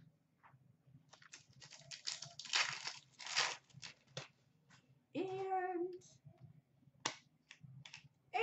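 Foil trading-card pack wrapper crinkling in the hands for about three seconds, a dense run of crackles. A brief wordless vocal sound follows about five seconds in, then a single click near the end.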